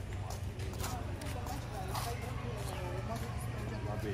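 Indistinct chatter of several people around the camera, with a few scattered footsteps.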